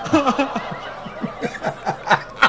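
People laughing at a punchline, several voices overlapping in short bursts.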